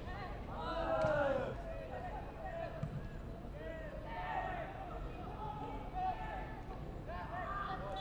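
Distant voices shouting and calling to each other across a football pitch, short rising and falling calls throughout, with a couple of faint thuds.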